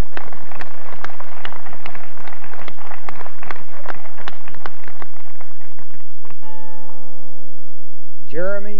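Audience clapping, dense and irregular, dying away after about six seconds. A steady humming tone with overtones follows near the end.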